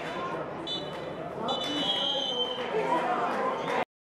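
Referee's whistle blown twice, a short blast about a second in and then a longer one of about a second, over voices and stadium noise. The sound cuts off suddenly near the end.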